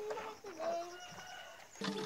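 A chicken calling in a few drawn-out, pitched notes that bend in pitch.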